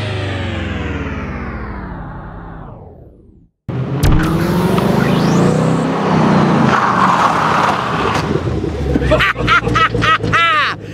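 Rock music winds down, its pitch falling as if the track were slowing to a stop, and fades out about three and a half seconds in. After a short silence, a Chevrolet Camaro ZL1's supercharged V8 is heard driving, with a noisy swell as the car goes by. A man's excited voice comes in near the end.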